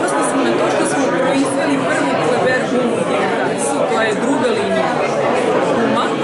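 Speech throughout: a woman talking, over a background of room chatter.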